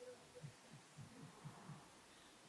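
Near silence: room tone with faint, irregular low soft thuds, a few a second.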